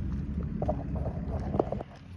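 Low rumble of wind buffeting a phone microphone, with a few faint clicks.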